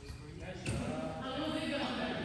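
A single volleyball impact on the hard gym floor under a second in, followed by players' voices in a large gymnasium hall.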